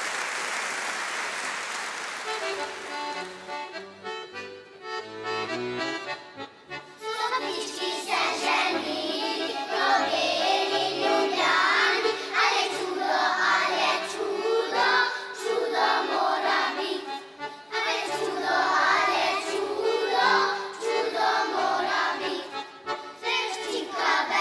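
Applause for about the first two seconds, then a small instrumental ensemble plays a short introduction. About seven seconds in, a children's choir starts singing a Slovenian folk song to the ensemble's accompaniment.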